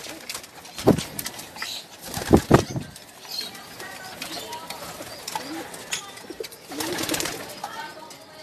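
Domestic pigeons cooing in a loft, with a few dull thumps: one about a second in and two more a little after two seconds.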